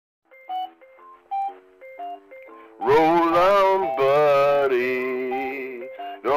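Casio electronic organ playing short chords, about four a second. About three seconds in, a man starts singing over it, louder than the keyboard.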